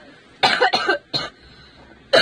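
A young woman coughing: a quick run of harsh coughs about half a second in, then one more short cough.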